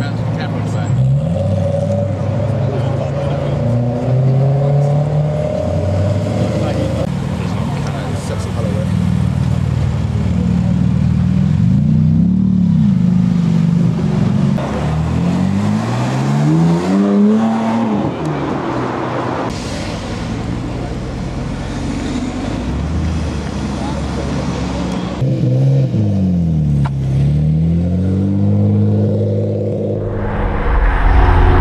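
Performance cars driving off one after another, engines revving up and dropping back in several sweeps. Among them are a BMW M3 saloon's V8 and a BMW M4's twin-turbo straight-six.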